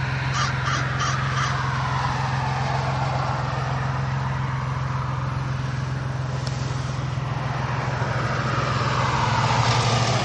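A crow cawing four times in quick succession within the first second and a half, over a steady low hum and a passing rush of road noise that falls in pitch over the next few seconds and rises again near the end.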